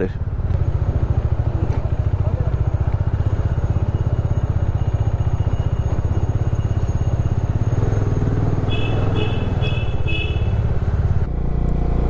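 Onboard sound of a Bajaj Dominar 400's single-cylinder engine running steadily at low road speed, with a change in its note near the end. Four short high beeps come a little before that.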